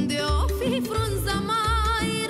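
A woman singing a Romanian folk song, her voice wavering in vibrato with quick ornamental turns. Behind her is a folk band accompaniment with a steady bass note about twice a second.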